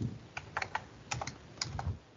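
Computer keyboard keys being pressed: a quick, irregular run of about ten sharp clicks.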